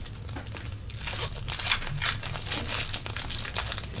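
Foil trading-card pack wrapper being torn open and the cards slid out, the wrapper rustling and crackling in irregular short bursts.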